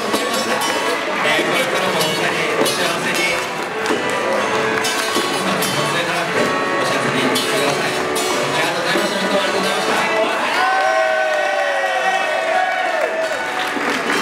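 A small live band of acoustic guitar, electric keyboard and hand drums playing, with voices and some cheering from the crowd in a large room. About ten seconds in, a tone glides downward for a couple of seconds.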